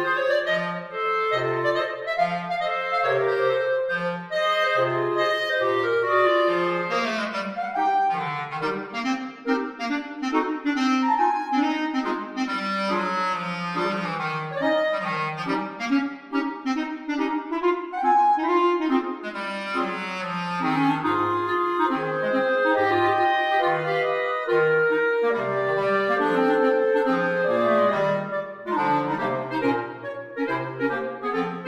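Clarinet quartet of three clarinets and a bass clarinet playing a light, bouncy dance tune in harmony. The bass clarinet plays short detached bass notes under the upper clarinets, then takes over the melody in the middle before going back to the bass notes.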